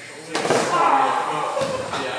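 A sudden thud about a third of a second in as a fencer goes down onto the padded gym mat, followed by loud voices.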